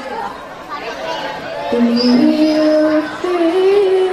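A girl's voice singing a hadroh vocal line through a microphone. After a short pause near the start, she sings long held notes that climb in steps.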